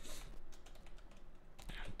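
Quiet typing on a computer keyboard, a few scattered keystrokes.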